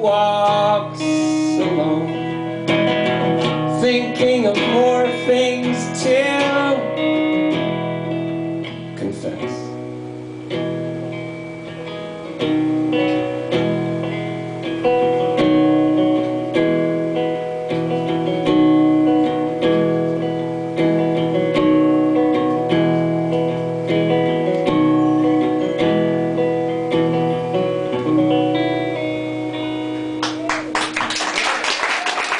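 Acoustic guitar and a man's singing voice: a sung line over strummed chords in the first several seconds, then the acoustic guitar plays on alone, strumming steady chords.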